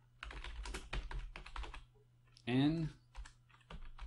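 Typing on a computer keyboard: a quick run of keystrokes, then a short voiced sound from the typist about halfway through, then a few more keystrokes.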